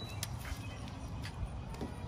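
A dog's claws clicking on concrete as it walks: a few scattered, irregular taps over a low steady rumble.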